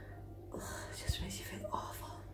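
A woman speaking faintly, almost in a whisper, starting about half a second in, over a low steady hum.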